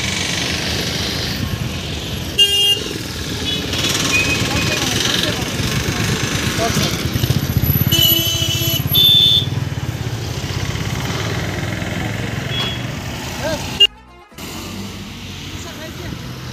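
Roadside highway traffic close by: cars, vans and a scooter running past in slow-moving traffic, with a short car-horn toot about two and a half seconds in and longer horn blasts around eight to nine seconds. Voices can be heard among the traffic.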